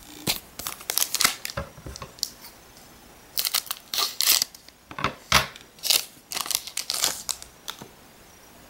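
A foil Pokémon card booster pack being torn open and its wrapper crinkled: a run of short, irregular rips and crackles, busiest in the middle and later part.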